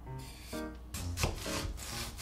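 Kitchen knife scraping the skin off a nagaimo (Chinese yam) and slicing into it, a run of rasping strokes that starts about half a second in and grows stronger, over background music.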